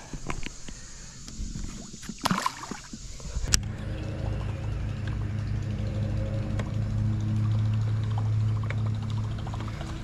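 A few knocks and rattles, then from about three and a half seconds in a steady low hum from a bass boat's electric trolling motor holding the boat along the bank.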